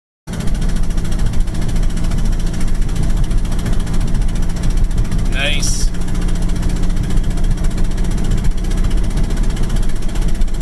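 Volkswagen Mk6 TDI common-rail turbodiesel engine heard from inside the cabin while driving at light load around 2,000 rpm: a steady low drone with road noise, starting suddenly a moment in. A short rising chirp comes about five and a half seconds in.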